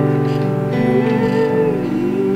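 Acoustic guitar playing slow, ringing chords, with a long wordless note held over it that dips in pitch near the end.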